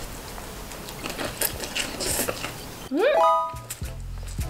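Eating noises from a mouthful of spicy stir-fried instant noodles mixed with a crunchy snack: soft slurping and chewing with scattered crisp crunches, then a hummed, rising 'mmm' near the end.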